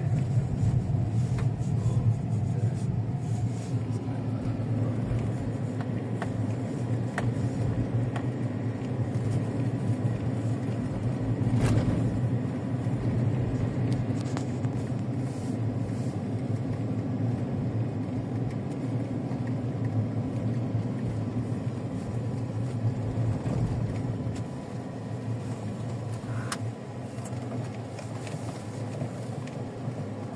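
Cabin noise of a GMC pickup driving on an unpaved road: a steady low rumble of tyres and engine, with a few brief knocks or rattles. It eases slightly in loudness near the end.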